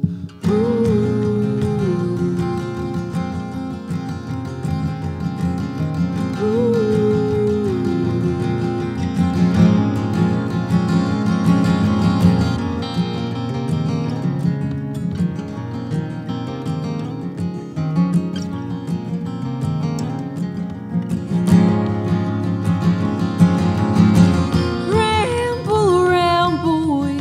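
Two acoustic guitars strumming and picking a folk song's intro. A voice comes in with a few bending sung notes near the end.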